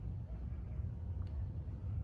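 A quiet pause filled by a steady low background hum, with one faint click a little over a second in.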